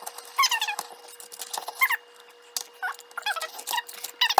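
A metal pick grinding and scraping into a plaster excavation block, giving several short high squeaks with sharp scraping clicks between them.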